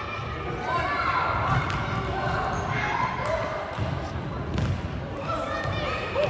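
Futsal ball being kicked and bouncing on a wooden sports-hall floor, a handful of sharp knocks with echo from the large hall, among voices calling out.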